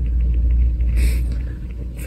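A low, steady rumble, with a brief rustle about a second in as someone moves right up against the microphone.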